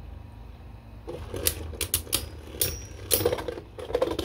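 Beyblade Burst tops (Cyclone Ragnaruk and Ultimate Valkyrie) spinning in a plastic Beyblade stadium, with a steady low whirr. From about a second in come sharp, irregular clicks as the tops clash with each other and knock against the stadium wall. The tail-launched Ultimate Valkyrie is running low on stamina.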